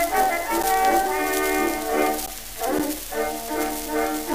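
Instrumental introduction of a 1916 Victor acoustic-era 78 rpm record of a vaudeville song: an orchestra led by brass plays the tune before the singer comes in. The sound is thin, with almost no bass, over a faint surface hiss.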